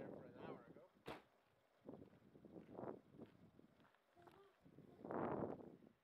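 Quiet voices of people murmuring, with a sharp click about a second in and a louder, noisier burst near the end.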